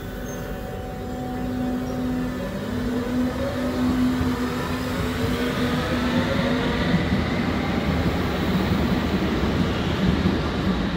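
Berlin U-Bahn train pulling out of the station and accelerating: the electric traction motors whine in several tones that rise slowly in pitch over the wheel and rail rumble, growing louder as it gathers speed.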